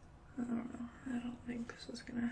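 A woman's soft, low voice making a few short murmured sounds, starting about half a second in.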